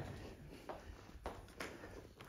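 Faint room tone with a few soft, brief knocks spread through the quiet.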